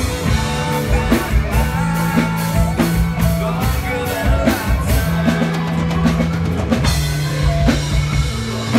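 Live band playing an instrumental passage of a pop-rock song: a drum kit keeps a steady beat under electric guitars and sustained low bass notes.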